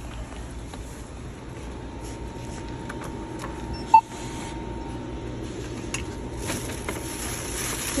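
Self-checkout barcode scanner giving a single short beep about four seconds in as an item is scanned, the loudest sound, over a steady low hum of store background noise.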